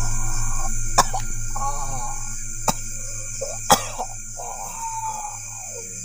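A man coughing and clearing his throat in short vocal sounds, over a steady droning backing of music, with a few sharp clicks.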